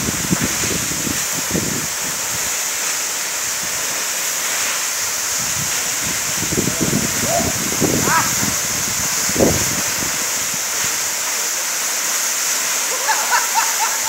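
Tall waterfall pouring into a shallow rocky pool: a steady rush of falling water. Voices call out faintly a few times, about halfway through and again near the end.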